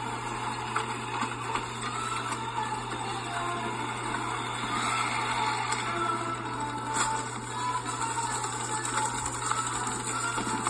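Cartoon sound effects of an insect's grain-harvesting contraption whirring and clattering, with a sharp click about seven seconds in. The sound is played back through laptop speakers over a steady low hum.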